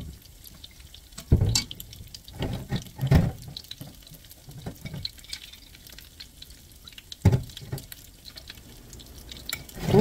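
Liquid seasoning poured from a bottle into a pan of blanched sweet potato stems, with a plastic spatula stirring and tossing the stems. Three louder knocks against the pan stand out, about a second in, about three seconds in, and about seven seconds in.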